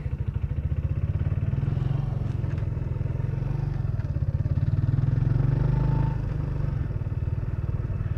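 Motorcycle engine running at low speed with an even pulsing beat as the bike rolls slowly; it eases off about six seconds in.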